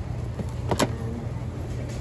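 Steady low hum of indoor store ambience, with one brief sharp knock about three-quarters of a second in.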